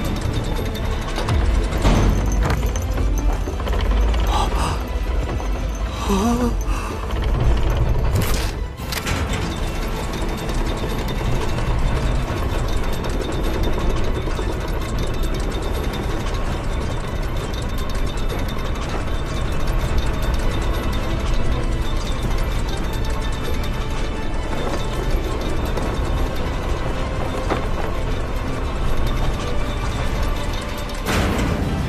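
Sound effects of a mechanical suit of armour assembling and moving: metal mechanisms clicking and working, with a few heavier hits in the first nine seconds, over background music.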